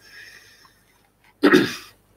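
A man's single short, sharp burst of breath about one and a half seconds in, like a sneeze or a stifled laugh-snort.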